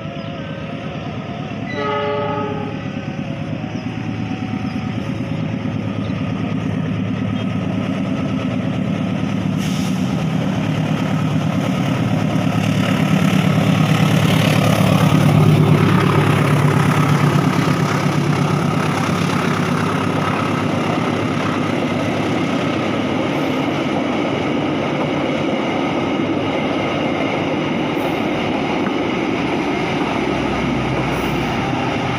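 Argo Parahyangan passenger train passing slowly, with a short horn blast about two seconds in. The diesel locomotive's engine then grows louder and is loudest around the middle as it passes, followed by the steady rumble of the coaches' wheels. The train is crawling at about 20 km/h under a speed restriction over newly laid points and sleepers.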